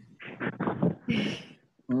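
A person's voice: a few short, quiet, hesitant vocal sounds, with a brief hiss partway through.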